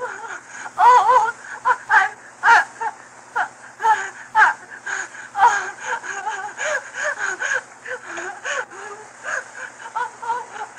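Voices from an old film soundtrack: fairly high-pitched talk whose words are not made out, running on throughout, over a faint steady low hum.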